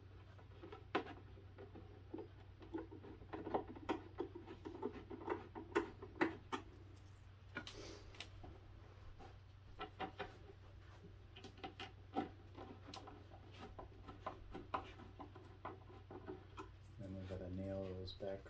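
Hand screwdriver working at screws in the particleboard top of a cube organizer: many small irregular clicks and scrapes of metal on screw heads and board, over a steady low hum. A voice starts near the end.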